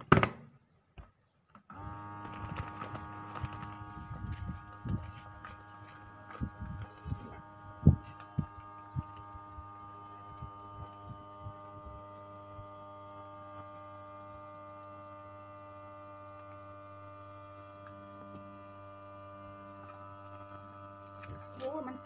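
Countertop vacuum sealer's pump running with a steady hum as it draws the air out of a plastic bag. The hum starts about two seconds in, and for the first several seconds there are scattered crackles of the plastic bag being handled and pulled tight.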